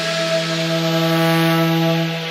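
A single synthesizer chord held steady with no drums, a breakdown in an electronic dance track.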